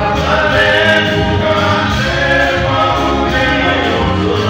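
Male gospel vocal group singing a hymn in harmony, a lead voice over backing singers holding long notes, with a steady low band accompaniment underneath.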